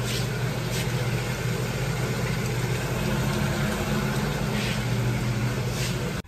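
Steady low hum of running machinery, with an even rushing noise over it that holds at one level.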